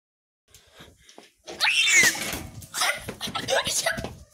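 A person's raised voice, words not clear, starting about a second and a half in after near silence.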